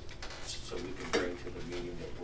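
A single sharp clink about halfway through, over a low man's voice talking off-microphone in a meeting room.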